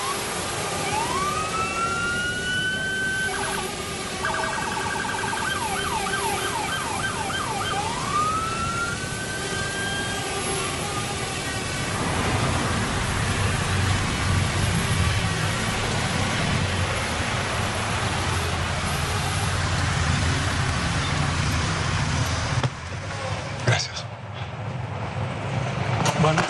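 A siren wails up in pitch, switches to a fast yelp for a few seconds, then goes back to slower rising and falling sweeps, over about the first ten seconds. A steady low rumble follows, with a sharp knock near the end.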